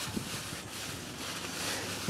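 Quiet, steady background noise with no distinct sound event.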